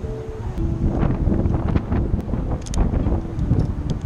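Wind buffeting the microphone outdoors: a loud, uneven low rumble, with a few light clicks.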